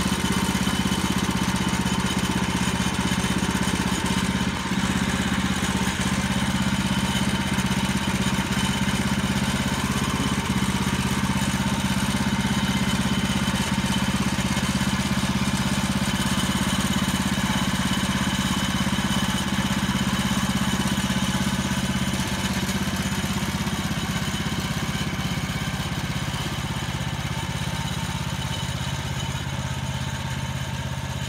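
The gasoline engine of a Woodland Mills portable bandsaw mill running steadily, a little quieter over the last several seconds.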